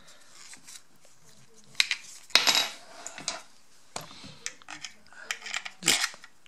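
Small metal clinks and knocks as bolts and the vacuum motor's housing are handled during reassembly: a few separate knocks, the loudest about two and a half seconds in.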